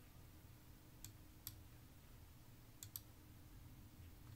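Four faint, short clicks over near-silent room tone, in two pairs, typical of a computer mouse being clicked.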